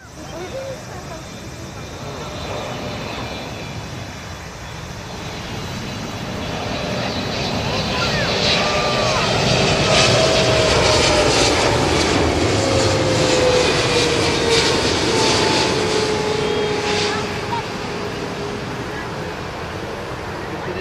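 Boeing 777-300ER's GE90-115B turbofan engines on landing approach: a jet roar that grows louder as the airliner comes in low, peaks for several seconds with a whine falling in pitch as it passes, then eases slightly.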